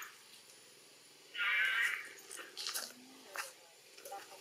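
A macaque's high, harsh squealing call, about half a second long, about a second and a half in, followed by a few short faint clicks.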